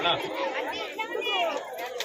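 Several people talking at once, overlapping background chatter.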